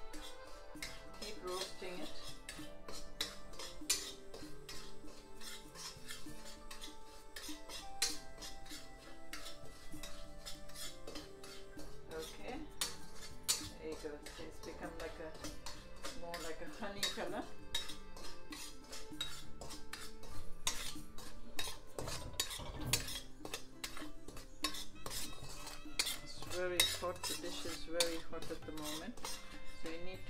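A metal spatula scraping and clinking irregularly against a metal karahi as semolina is stirred while it roasts, over soft background music.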